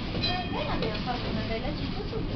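Background voices talking over the low, steady rumble of a tram in motion.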